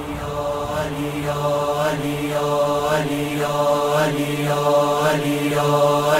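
Intro of a Shia noha: a low sustained vocal drone with a chorus chanting in even pulses, about two a second, slowly growing louder.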